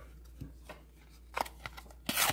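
Faint handling of a stack of trading cards: a few soft clicks and rustles as the cards are squared and shifted, the clearest about a second and a half in.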